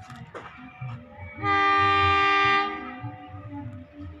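Diesel locomotive air horn sounding one long blast of a little over a second, a chord of several steady tones, as a local train is dispatched from the station.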